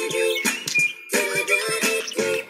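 Recorded music playing, with short pitched notes in a repeating rhythmic riff.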